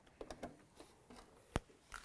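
A few soft handling clicks and one sharp click about one and a half seconds in, from hands working at a domestic sewing machine; the machine itself is not yet running.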